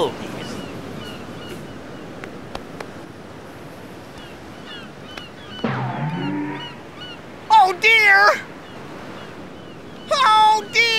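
Steady sea surf washing on a beach, with faint chirps over it. About six seconds in comes a short falling tone, and near the end a loud, wavering vocal wail of dismay.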